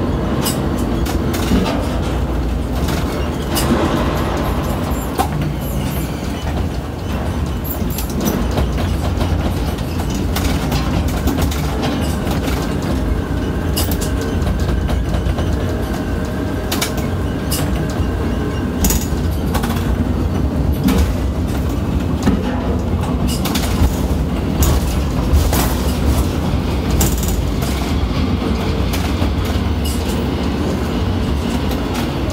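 Ship-to-shore container crane heard from the operator's cab: a steady heavy rumble of the hoist and trolley machinery with repeated clicks and knocks, like rail wheels, as the spreader comes up out of the ship's cell and the trolley travels along the boom to above the quay.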